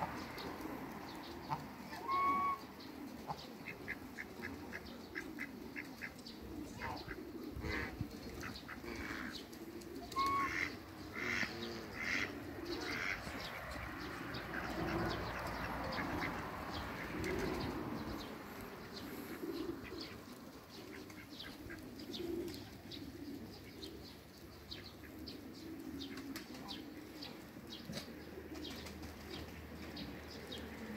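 A flock of domestic geese and Muscovy ducks grazing: a short pitched goose honk about two seconds in and another about ten seconds in, with soft low calls and a run of short clicks from the feeding birds.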